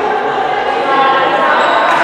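Handball match sounds in a reverberant sports hall: a ball bouncing on the court floor among voices calling and shouting.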